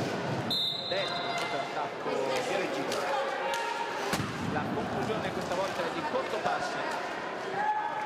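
Roller hockey play in an indoor rink: repeated sharp clacks of sticks striking the hard ball, and the ball hitting the floor and boards, over the murmur and calls of spectators in a large hall.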